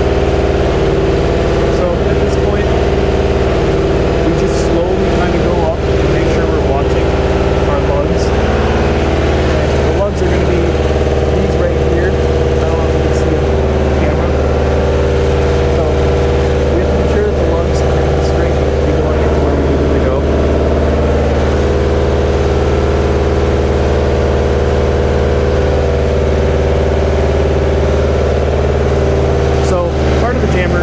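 A munitions lift truck's engine runs steadily under load, a constant droning hum, as it lifts a missile on its cradle. A few light metal clinks sound over it.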